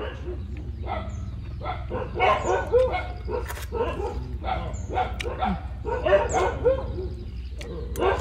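A dog yipping and whining in short repeated bursts, over a steady low hum.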